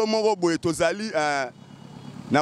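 A man speaking in a raised, animated voice, breaking off about one and a half seconds in.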